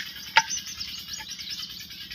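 Faint, high bird chirps in the background, with a single sharp knock about half a second in.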